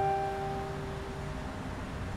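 Sparse piano score: a few held notes ring on and fade away within the first second and a half, leaving a low steady rumble underneath.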